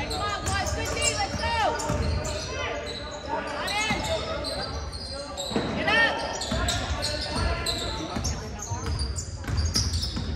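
A basketball bouncing on a hardwood gym floor, with sneakers squeaking in several short rising-and-falling chirps as players run and cut. The loudest squeaks come about a second in and about six seconds in. Everything rings in a large echoing gym.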